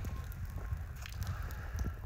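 Low rumble of wind on a phone microphone outdoors, with a few faint clicks of handling or footsteps.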